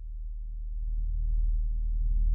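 A deep electronic drone swelling up from silence, a low steady tone growing steadily louder.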